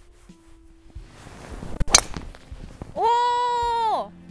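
A driver swung with a short swish and striking a golf ball off the tee with a sharp crack about two seconds in. About a second later, a loud, high, steady call with a voice-like ring, about a second long, stops abruptly.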